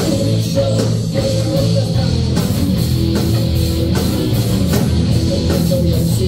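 Heavy metal band playing live: distorted electric guitars and bass over a drum kit, loud and steady throughout.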